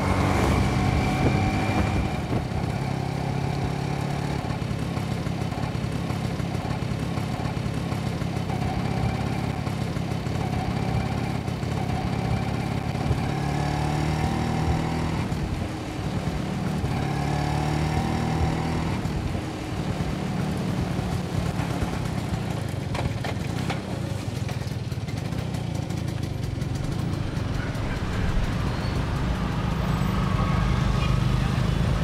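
Small motor scooter engine running as it is ridden, its note rising and falling with the throttle and easing off briefly about halfway through.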